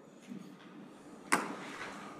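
A single sharp knock a little past halfway, the loudest sound here, amid faint rustling room noise.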